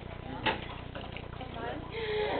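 Indistinct background chatter of students in a classroom, with one sharp knock about half a second in.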